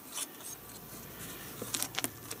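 Handling noise from fingers pressing a red cap onto a parachute tube: soft rubbing with a few small clicks, the sharpest cluster shortly before the end.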